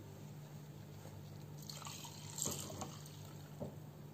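Faint trickling and dripping of milk being poured into a cup, over a steady low hum.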